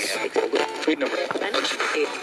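Spirit box ('808') sweeping radio stations: a choppy stream of clipped radio voice fragments and static, each snatch lasting only a fraction of a second.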